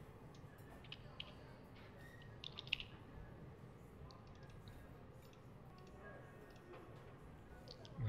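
Faint computer keyboard keystrokes and mouse clicks, a few sharp clicks clustered about one to three seconds in, over a low steady room hum.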